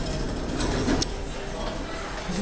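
Busy indoor public-space background: a steady low rumble with indistinct voices of other people, and one sharp click about a second in.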